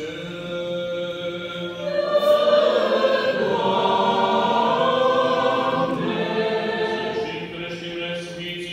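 Several voices singing Orthodox liturgical chant a cappella, held notes in harmony, swelling louder from about two seconds in and easing off near the end.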